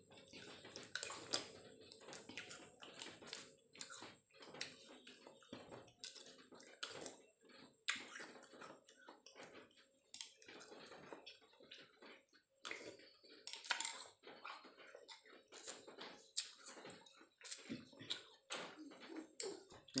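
Eating sounds: a metal spoon clinking and scraping in a ceramic bowl of es buah (milky iced fruit dessert), with wet slurping, as irregular short clicks throughout.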